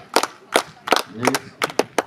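Steady rhythmic handclapping, about two and a half claps a second, with voices shouting in between.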